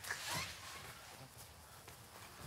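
A brief vocal sound in the first half second, then faint room tone.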